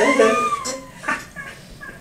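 A person laughing, with a single high squeal that rises and falls in pitch in the first second, then trails off into a few short breaths.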